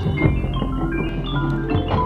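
Marching band music in which mallet percussion (marimba, xylophone, glockenspiel) plays quick runs of short ringing notes over sustained low tones.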